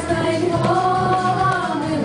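A group of children singing together, holding one long drawn-out note that rises a little and falls back.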